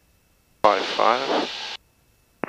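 A short spoken phrase on the cockpit headset audio, about a second long, opening with a click and cutting off abruptly. The audio is otherwise near silent, with no engine noise heard.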